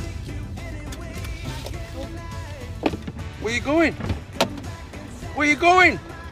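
Steady car-cabin engine and road rumble under music, with two sharp clicks and two short voiced sounds in the second half.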